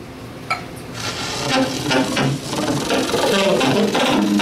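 Saxophone played with extended technique: a short pop about half a second in, then from about a second in a dense, rapid, irregular sputter of short broken tones and rattling chatter, with no steady held note.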